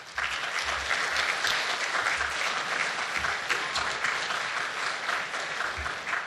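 Audience applauding, a dense patter of many hands clapping that starts suddenly and eases off near the end.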